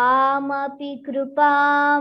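A girl chanting a Sanskrit verse in slow, sung recitation, holding two long syllables on a steady pitch with a short break between them.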